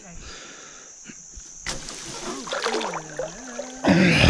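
Water sloshing against the boat as a limb line is handled by hand, ending in a loud splash as the hooked flathead catfish thrashes at the surface.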